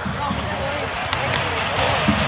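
Excited voices of celebrating players close to a phone microphone, over heavy low rumbling from wind and handling on the mic as the phone swings about. A few sharp clicks sound in the second half.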